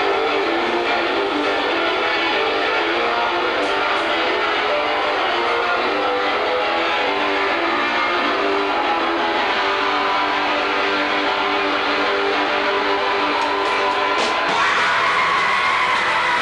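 A punk rock band playing loud, with distorted electric guitars holding sustained chords over drums. The sound shifts brighter and higher near the end.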